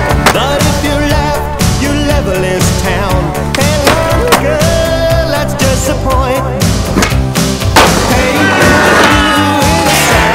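Skateboard wheels rolling and the board hitting and grinding obstacles, with several sharp impacts, under loud music.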